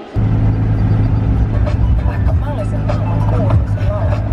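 Steady low drone of a car being driven, heard from inside the cabin: engine and road noise.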